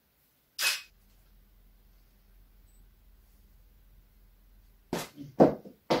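A single short, sharp click of a DSLR's shutter firing a frame with the studio flash, followed by a faint low mains hum. Near the end come a few louder short sounds and a voice saying "okay".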